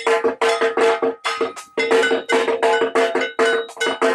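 Rapid metallic percussion, struck about five times a second with a steady ringing pitch, like a cowbell or bell-metal gong beaten in quick rhythm. The beat breaks off briefly a little over a second in, then resumes.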